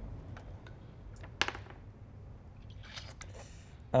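A few faint, short clicks and taps at a tabletop, the sharpest about a second and a half in: a die being rolled for a perception check.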